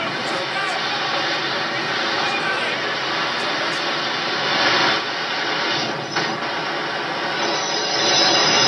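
Earthquake-scene soundtrack from a TV episode playing through a tour tram's monitor speakers: steady dense noise with a louder swell about five seconds in and a sharp knock about a second later.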